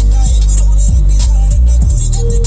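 Loud music with strong, deep bass and a steady beat, played through a tractor-mounted music system with three subwoofers.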